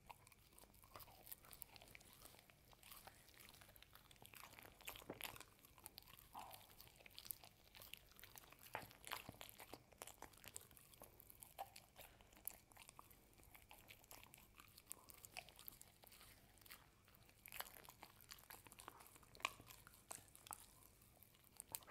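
A dog chewing and nibbling a soft homemade ube roll treat held out in a gloved hand: quiet, irregular clicks of chewing.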